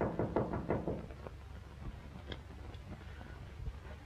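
A quick run of knocks on a door in about the first second, then faint scattered ticks.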